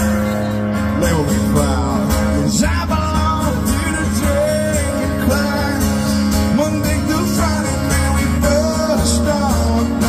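Live country-rock band playing loudly through an outdoor festival sound system, heard from within the crowd: guitars, bass and drums with singing over them.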